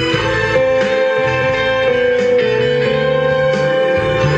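Instrumental break played on an arranger keyboard: a guitar voice carries the melody over the keyboard's accompaniment, with a moving bass line and a long held note underneath.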